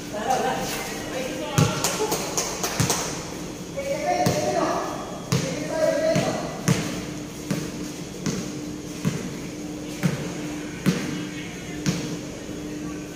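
Basketball bouncing on a hard court floor, with a few scattered thuds early on. From about halfway through it becomes a steady dribble of roughly one bounce per second, echoing under a large roof, while players shout.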